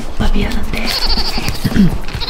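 A man making wobbly, bleat-like vocal noises while biting into and chewing a hamburger.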